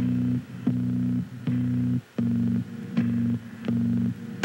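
A low, organ-like chord of several steady tones, chopped into a regular pulse about every three-quarters of a second with a short click at each cut, like a looped synthesizer or tape loop in an electronic soundtrack.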